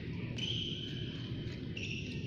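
Court shoes squeaking on a badminton court mat as a player lunges and shifts: two high squeals, the first about half a second in and lasting about a second, the second near the end. A steady low rumble runs underneath.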